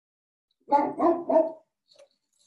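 A dog barking three times in quick succession, the barks loud and close together.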